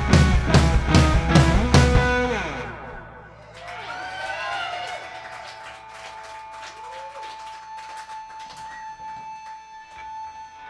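Punk band's electric guitar and drum kit playing the end of a song, with hard drum hits, then stopping about two and a half seconds in and ringing out. A quieter stretch follows with a steady high tone held through it.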